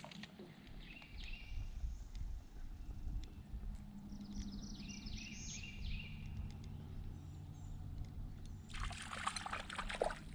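Water trickling and moving around a kayak drifting in a shallow river, under a steady low rumble, with a few faint high chirps about a second in and again around the middle. A short rustling burst comes near the end.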